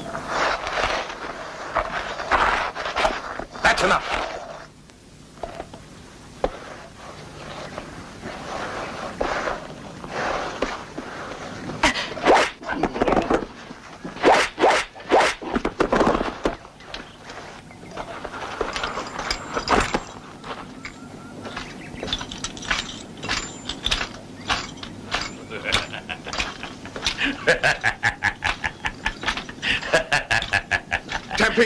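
A series of sharp cracks and knocks in clusters, then a man laughing heartily in quick bursts near the end.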